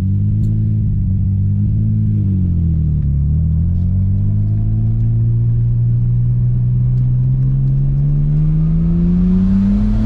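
Nissan Skyline R32 GT-R's RB26 straight-six heard from inside the cabin while driving. The engine note dips about two to three seconds in, then climbs slowly and steadily as the car pulls.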